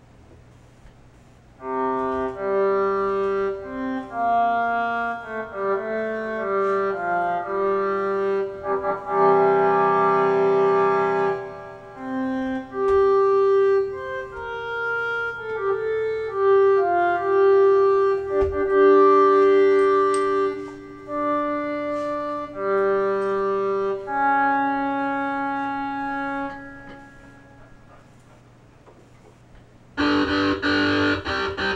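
A synthesizer played from a coin-touch MIDI keyboard: a melody with chords in a reedy, clarinet-like tone, with several notes sounding at once. It starts about two seconds in and fades out a few seconds before the end.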